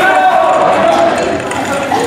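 A person's voice.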